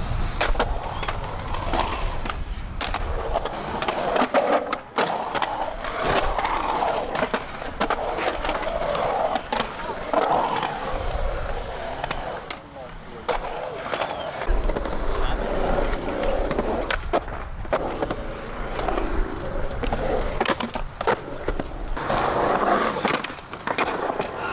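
Skateboard wheels rolling over the concrete of a skatepark bowl, with sharp clacks now and then as the board and trucks strike the surface.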